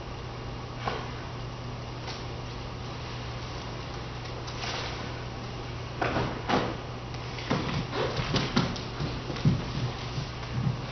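Steady low room hum; from about six seconds in, a run of irregular thuds, scuffs and cloth rustles as dancers swing a large cloth and go down to the studio floor.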